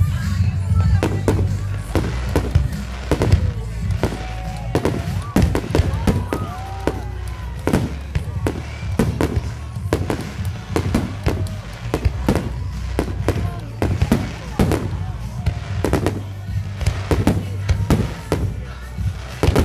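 Fireworks display: aerial shells bursting in a rapid, irregular string of sharp bangs, with music playing underneath.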